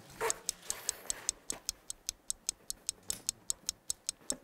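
Steady clock ticking, about five ticks a second, marking a game timer that has just been started.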